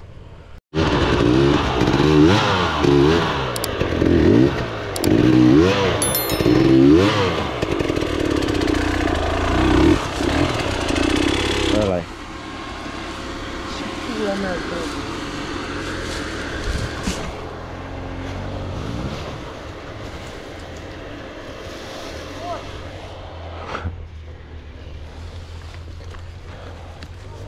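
Enduro dirt bike engine revved hard in quick rising and falling bursts under load as a stuck bike is worked free on a steep slope; about twelve seconds in the revving stops and the engine runs on more quietly.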